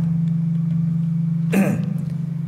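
A steady low hum fills a pause in speech, unchanged and also running on under the talking on either side. There is a brief sound from the speaker's voice about one and a half seconds in.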